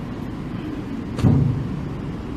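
Steady low hum of room tone, with a short voiced sound from the man about a second in, lasting about half a second.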